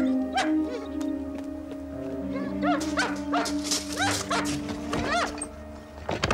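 A dog whining and giving short barks again and again, the whines coming quicker in the second half, over film-score music with long held notes.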